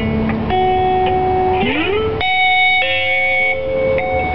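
Live music: an instrumental passage of a song between sung lines, with long held notes that change every second or so, one note sliding up in pitch just before the middle.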